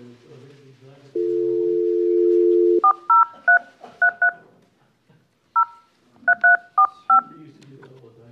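Telephone on speaker: a steady dial tone for about a second and a half, then about ten short touch-tone keypress beeps in quick clusters as a number is dialled to call a councillor into the meeting.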